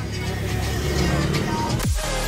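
Steady low rumble of a moving bus's engine and road noise heard from inside the cabin, ending with a quick falling swoosh as music comes in.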